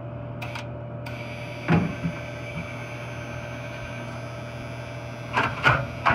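Dixie Narco 320 soda machine vending a can after a jam was cleared: a click, then the vend motor starts running with a steady whine about a second in, a thud shortly after, and a few clicks and knocks near the end, over the machine's steady hum.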